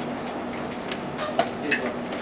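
Sharp clicks of plastic chess pieces being set down on the board and the chess clock's button being pressed during fast blitz play, a few in quick succession in the second half, over a steady low background hum.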